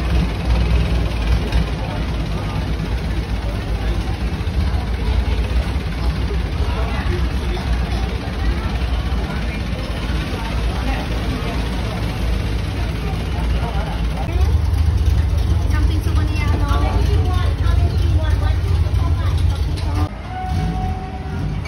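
Boat engine running with a steady low drone, louder from about fourteen seconds in, under people talking nearby.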